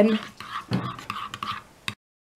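Spoon stirring a thick yogurt-and-mayonnaise white sauce in a bowl: soft scraping and squelching with a few light clicks, and one sharper click near the end.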